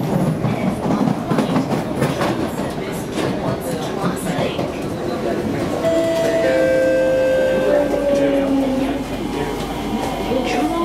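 Inside an SMRT Kawasaki C151B train: the wheels clatter on the rails, then from about six seconds in the traction motors whine in several steady tones that fall slowly as the train brakes into the station.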